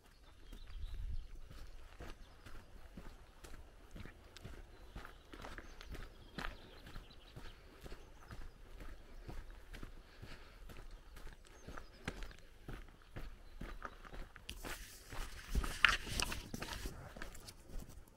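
Footsteps on a gravel dirt road at a steady walking pace. A louder burst of noise comes near the end.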